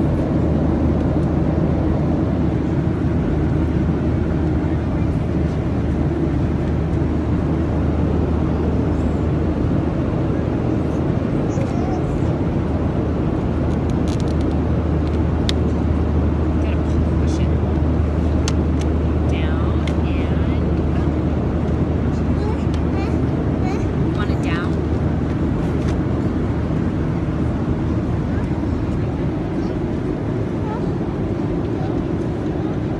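Steady low drone of a passenger airliner cabin, engine and air noise holding even throughout, with a few brief high vocal sounds about two-thirds of the way in.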